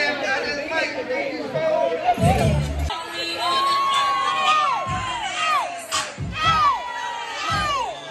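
A crowd of partygoers cheering and shouting over club music, with drawn-out yells that fall in pitch at their ends, coming about once a second in the second half.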